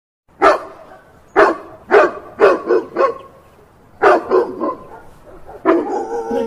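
A dog barking repeatedly, about ten barks: single barks and quick runs of two or three, with short pauses between.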